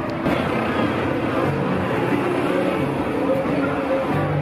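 Busy street at night: traffic running past, with people talking and faint music mixed in.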